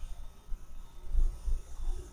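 A pause in speech filled with a low background rumble and a few soft low thumps.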